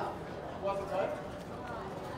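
Indistinct talking, too unclear for words to be made out.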